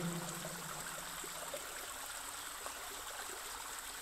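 Faint, steady running water, like a small stream trickling, as a background sound bed. A faint low hum fades out over the first second and a half.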